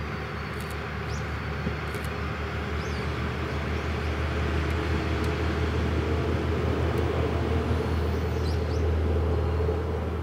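Diesel local train on the JR Dosan Line running past, its engine drone and rail noise growing steadily louder and peaking near the end. Faint bird chirps sound above it.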